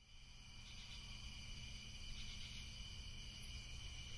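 Faint chirring of crickets, a night-time ambience that fades in over the first second, with a low steady hum underneath.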